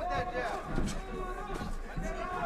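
Men's voices at a low level in the background, talking and calling out from around the boxing ring.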